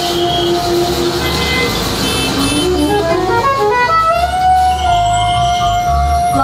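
Live jazz ensemble music: a soprano saxophone plays a line of short notes over keyboards and a low pulsing bass, then holds one long note from about four seconds in.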